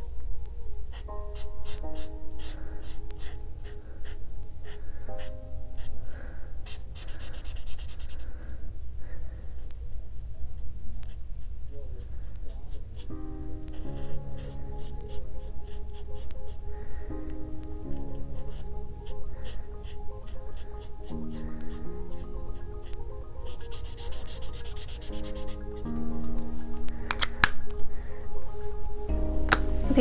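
Chisel-nib art marker rubbing across sketchbook paper in many quick strokes, laying down a base colour, over background music of slow, held notes.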